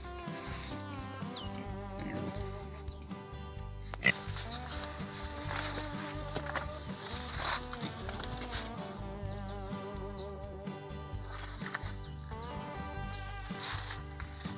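Young pigs grunting in their pen over quiet background music, with a couple of sharper calls about four and seven seconds in.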